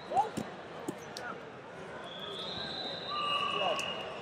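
Heavyweight wrestlers' bodies and feet thudding on the wrestling mat during hand-fighting, a few dull thumps in the first second, the loudest just after the start. Faint distant voices echo in the large hall behind them.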